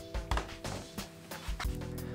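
Background music in a pause between words: a few held notes ringing on, with a few faint light taps.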